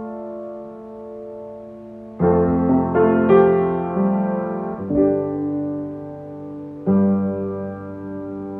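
Slow solo piano music in held chords: fresh chords are struck a little after two seconds, around three, at five and near seven seconds, each left to ring and fade.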